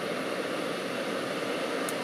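Steady road and engine noise inside a moving car's cabin, an even hiss with no distinct tones, with one faint tick near the end.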